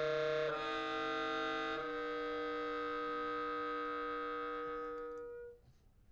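Saxophone ensemble (soprano, alto, tenor and baritone saxophones) playing sustained chords that change twice in the first two seconds. The last chord is held and then released about five and a half seconds in.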